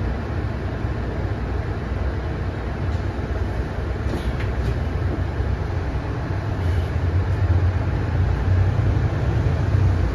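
Mercedes-Benz O530 Citaro single-decker bus's diesel engine heard from inside the cabin: a steady low rumble at rest that grows stronger about two-thirds of the way in as the bus pulls away from a standstill.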